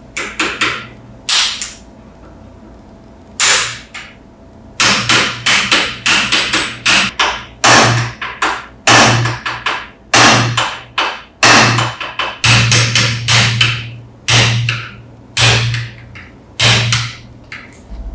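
Hammer blows on a screwdriver set against a bullet-shaped lighter clamped in a bench vise: a few scattered sharp metallic knocks at first, then a steady run of strikes about two a second.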